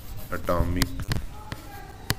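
A man's voice saying something short, then three sharp taps in quick succession about a second in: a stylus tapping on a writing tablet as he writes by hand.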